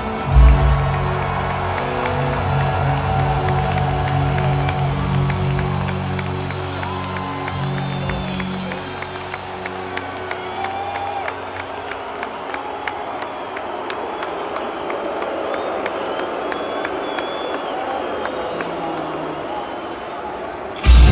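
A rock band's last chord ringing out on amplified guitars over an arena crowd cheering; the chord fades away about nine seconds in, leaving the crowd cheering, whistling and clapping.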